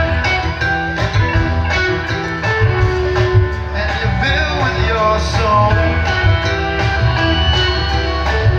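A live band playing, with a guitar carrying sustained notes, some of them bending in pitch, over steady bass and drums.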